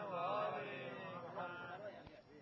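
A man's voice chanting a devotional recitation into a microphone, in long, melodic drawn-out phrases that trail off near the end.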